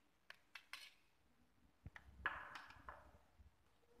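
A spatula pressing and working the crimped end of a metal collapsible toothpaste tube against a stone benchtop to close it: several light clicks and taps, then a short scraping rub a little after two seconds, the loudest sound. Faint overall.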